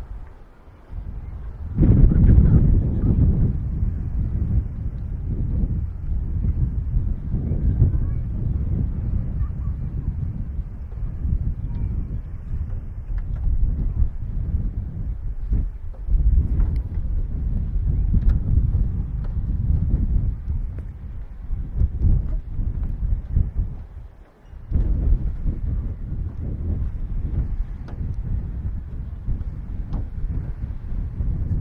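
Wind buffeting the microphone in uneven gusts, a low noise that comes up strongly about two seconds in and drops away briefly a few seconds before the end.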